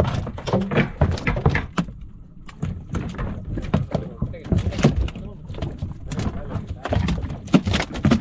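A freshly landed mahi-mahi thrashing on a boat deck, its body and tail slapping and thumping the deck in quick, irregular knocks.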